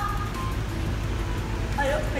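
Steady background noise of a claw-machine arcade open to the street, with faint machine music and traffic.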